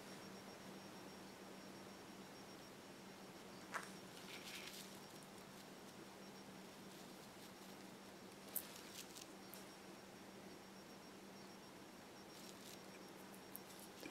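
Near silence: a faint steady hum, with a few faint clicks and light scratches, the clearest about four seconds and eight and a half seconds in, as a small paintbrush works silver mica powder onto a polymer clay piece.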